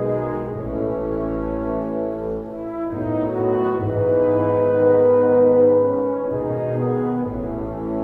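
Orchestral film score: brass led by French horns playing a slow melody of held notes.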